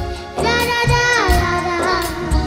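A young girl singing a held note that slides down partway through, over live band accompaniment with a regular drum beat.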